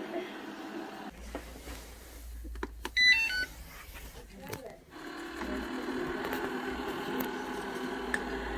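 Ultenic D5s Pro robot vacuum giving a short electronic chime of a few stepped beeps about three seconds in, while it seeks its docking station on a low battery. A steady hum follows.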